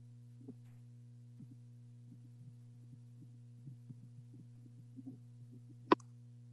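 Low, steady electrical hum on an open meeting audio line, with faint irregular taps scattered through it and one sharper click just before the end.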